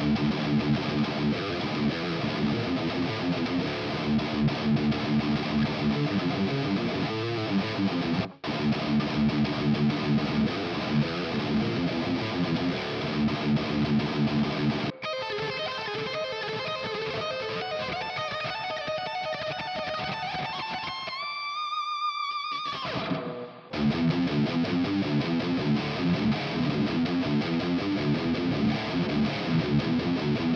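Electric guitar demo of a Jackson King V with an active EMG 81 bridge pickup, played through a distorted amp: dense low-register metal riffing, then higher single-note phrases. A held high note rises slightly in pitch and is cut off abruptly; after a short gap the riffing resumes.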